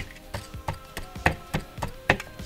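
A red plastic digging tool scraping and chipping hard at a wetted plaster block in a plastic bowl, in short repeated strikes at about four a second.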